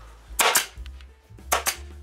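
Senco pneumatic upholstery stapler firing twice, about a second apart, driving staples through the vinyl into the plastic seat frame. Each shot is a sharp snap with a quick second crack.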